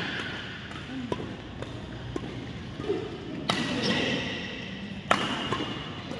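Badminton rally: several sharp cracks of rackets striking a shuttlecock, the hardest about three and a half and five seconds in, with short high squeaks of court shoes on the floor.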